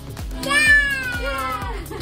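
Background music with a steady beat, and about half a second in a high-pitched squeal from a toddler that falls slowly in pitch over about a second.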